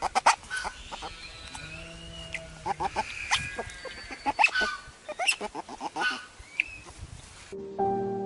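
Otter making happy noises while being tickled: a quick run of short high chirps and squeaks with a few gliding squeals. Soft piano music comes in just before the end.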